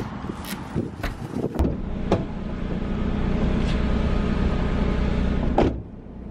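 Several sharp metallic clicks of a key working a doorknob lock. About a second and a half in, a steady car engine rumble takes over and cuts off suddenly near the end.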